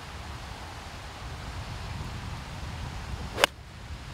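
A golf wedge striking a ball off the tee: one sharp click about three and a half seconds in, over a low steady background hiss.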